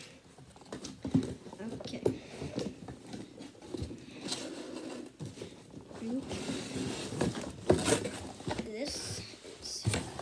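A cardboard box being handled and opened: cardboard scraping and rubbing as flaps are pulled and the inner packaging slides out, with irregular knocks and taps against the box.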